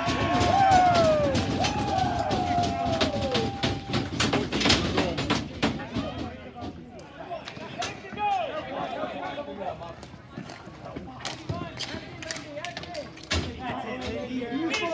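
Ball hockey play: many sharp clacks and knocks of sticks, ball and players on the court throughout, with loud shouting voices in the first few seconds and fainter calls later on.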